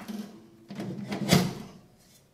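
Stainless-steel chimney pipe of a Klarstein Diavolo portable pizza oven being pulled up out of its collar on the oven's sheet-steel top: a short metal sliding and scraping, loudest about a second and a half in.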